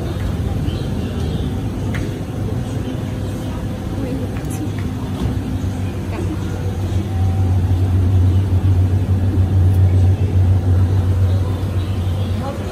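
A low engine rumble that grows louder from just past the middle and eases off near the end, over a steady hum and background voices.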